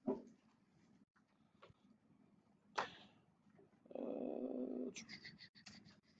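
Faint sounds: a sharp click about three seconds in, a faint pitched sound lasting about a second, then a quick run of computer mouse clicks near the end as a file window is opened.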